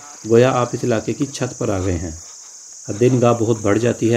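A steady, high-pitched chorus of chirring insects, like crickets, runs throughout under a man's voice speaking. The voice is louder and breaks off for a moment about two seconds in.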